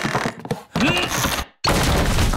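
Cartoon sound effects of a wooden door being forced: rattling and a strained grunt, then a heavy crash as the door falls in a little over one and a half seconds in.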